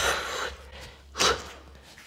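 A woman breathing hard during a jumping-jack and plank-jump exercise: two heavy exhales, one at the start and a shorter one just over a second later.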